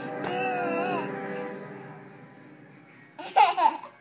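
Background music, with a toddler's loud, high squealing laugh about three seconds in.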